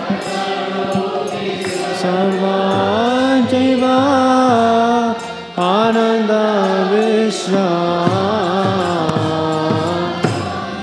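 Slow, melodic chanting of a Sanskrit devotional prayer: one sustained, gliding sung line, with a short break about five and a half seconds in.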